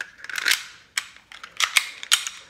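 Sig Sauer P365 CO2 air pistol being worked by hand: a short sliding scrape, then sharp mechanical clicks, one about a second in and two close together a little later.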